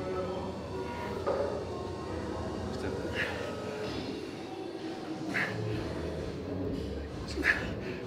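Gym background: faint music and low voices under a steady hum, with a short sound about every two seconds.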